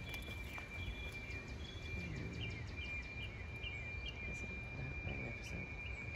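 Outdoor garden ambience: a small bird gives a quick run of short chirps, about three a second, in the middle, over a steady high-pitched tone and a low background rumble.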